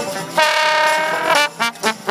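Trombone and trumpet playing together, with one long held note starting about half a second in and lasting about a second, then a few short notes.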